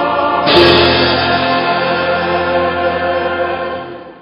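Church choir singing with instrumental accompaniment, moving to a new held chord about half a second in; the closing chord fades away near the end.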